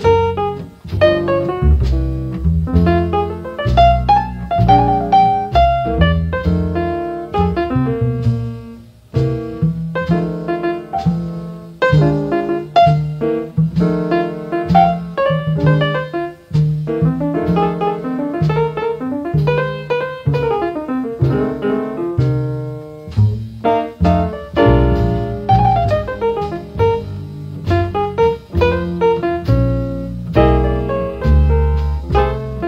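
Small-group jazz recording, piano to the fore playing busy runs and chords over a walking double bass.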